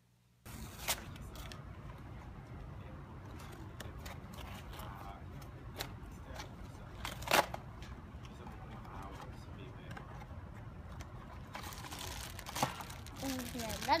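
Plastic-wrapped cardboard blind box being torn open by hand: plastic film crinkling and cardboard tearing, with scattered sharp clicks and knocks as the box is handled, over a steady background hiss. The crackling thickens near the end.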